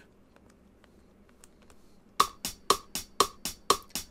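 Faint clicks of the OP-Z's keys as steps are entered, then a sampled hi-hat played by its step sequencer in steady eighth notes, about four hits a second, starting about halfway through; every other hit carries an extra tone.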